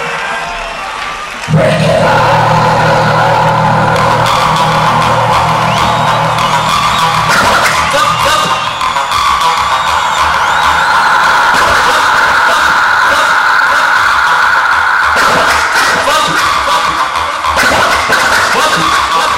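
A DJ's live set of music from turntables and a mixer, played loud through a festival PA. After a quieter opening, a louder, denser section comes in suddenly about a second and a half in and holds steady.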